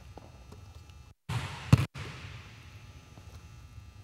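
A basketball bouncing on a hardwood gym floor, one sharp thud a little under two seconds in, set against quiet gym room tone. The sound cuts out completely for a moment just before and just after the thud.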